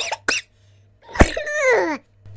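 Comic vocal sound effects: a laugh trails off, then after a short pause comes a sharp cough-like burst, followed by a voice sliding down in pitch for most of a second.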